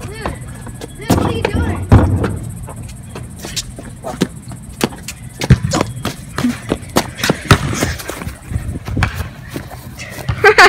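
Irregular thumps and knocks from a basketball game on a concrete driveway, the ball and feet hitting the ground, with brief shouts in the first couple of seconds.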